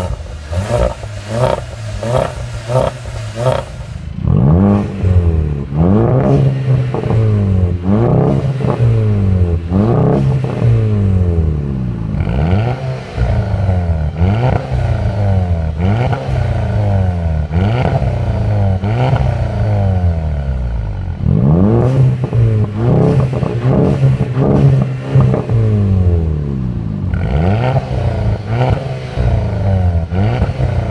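Volkswagen Golf GTI 2.0-litre turbocharged four-cylinder engines revved hard and repeatedly at a standstill through aftermarket exhausts, one with the resonator deleted. Quick stabs come first. Then follow long series of revs, each rising and dropping back about once a second, with a short pause a little past two-thirds of the way through.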